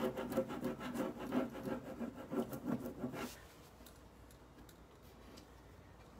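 A rub-on décor transfer being rubbed down onto a painted panel with a tool: quick, repeated scratching strokes that stop about three seconds in.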